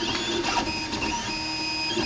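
MakerGear M2 3D printer printing, its stepper motors whining in shifting pitches as the print head moves, then settling into a steady tone about halfway through.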